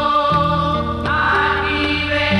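Women's choir singing a slow hymn in held notes over instrumental accompaniment with a sustained bass line.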